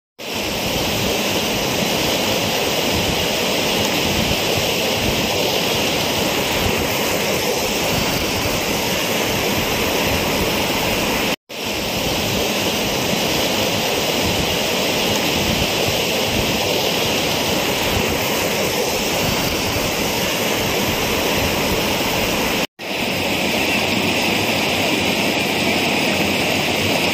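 Fast-flowing floodwater rushing in a steady, loud, unbroken wash of noise. The sound cuts out briefly twice.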